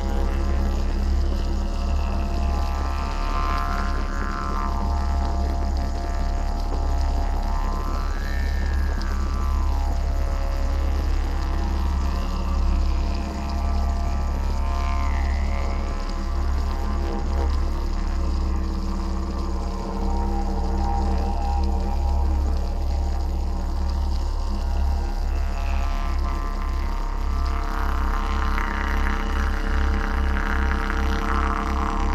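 Background music built on a continuous low drone, with overtones that sweep slowly up and down above it.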